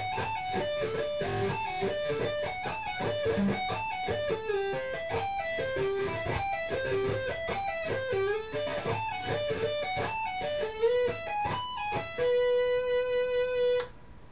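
Electric guitar playing fast sweep-picked major arpeggios, one note per string, shifted up and down the fretboard. About twelve seconds in it settles on a single note held for about two seconds, then stops.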